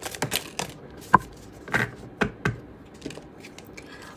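A deck of tarot cards being handled: shuffled, with cards slipped out and laid down on a tray. The result is a string of short card flicks and taps, the sharpest about a second in.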